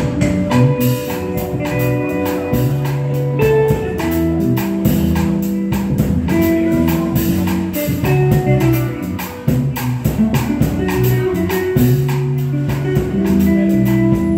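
Live instrumental jazz-Brazilian trio: archtop electric guitar playing chords and melody over electric bass notes, with a tube shaker played in a steady quick rhythm.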